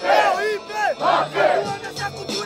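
Rap battle host shouting a series of loud hype calls over a hip-hop beat, with the crowd yelling along.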